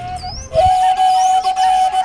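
Ethiopian washint, an end-blown bamboo flute, played solo. After a brief break for breath it comes back about half a second in with one long held note.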